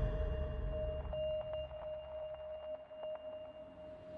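A steady held electronic tone from the soundtrack, with a fainter, higher tone above it and several faint ticks scattered through its middle.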